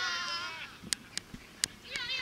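Several high-pitched voices shouting drawn-out calls at once, wavering in pitch and dying away about half a second in; then three sharp knocks in the second half.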